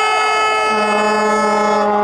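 Several horns sounding long, steady notes together. A lower note joins less than a second in and holds on.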